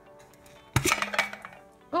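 Lid of a small tin trash can being pulled off: a sharp metallic clank about a second in, then a few lighter tin clinks, over faint background music.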